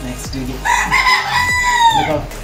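One long, high-pitched animal call, starting about half a second in and lasting about a second and a half, its pitch falling slightly at the end.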